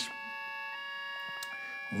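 Background music of soft sustained chords, with the held notes changing twice.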